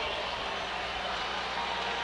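Steady crowd noise from a football stadium's stands, an even wash with no single sharp sound.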